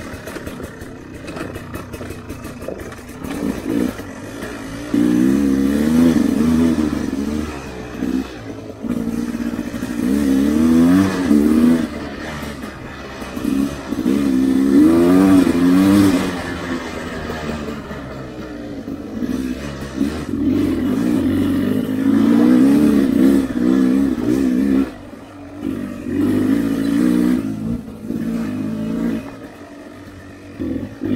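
Enduro motorcycle engine revving up and easing off again and again as the bike is ridden along a bumpy dirt trail, with the pitch swinging up and down through each surge.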